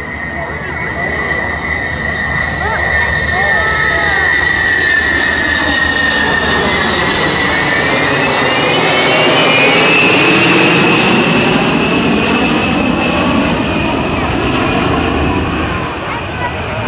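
U.S. Air Force B-52H Stratofortress's eight TF33 turbofan engines on a low flyby: a high whine over a heavy rumble. It builds to its loudest as the bomber passes overhead about ten seconds in, the whine shifting in pitch as it goes by, then eases slightly.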